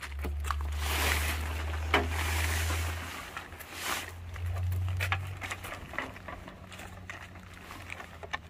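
Plastic tarp rustling and crinkling as it is handled and pulled over a roof rack, with light ticks, over a low steady rumble that comes and goes.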